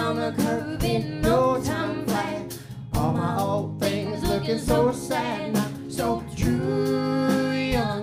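Americana folk band playing live: a man and a woman singing together over guitar and a steady beat.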